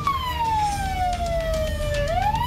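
Emergency vehicle siren wailing: one slow downward slide in pitch over about two seconds, turning to rise again at the very end.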